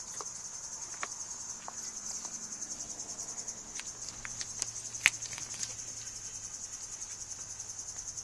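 Steady high insect trill, a fast, even pulsing that runs on without a break, with scattered light clicks over it, the sharpest about five seconds in.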